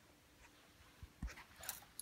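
Near-quiet room with a few faint short clicks and taps in the second half.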